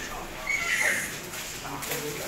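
Indistinct voices of several people talking in a room while paper ballots are handled and shuffled on a table, with a sharp paper crackle just before the end.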